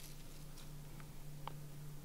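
Quiet room tone with a steady low hum, and two faint light ticks about a second in and half a second later as the small plastic cat-shaped humidifier top is handled.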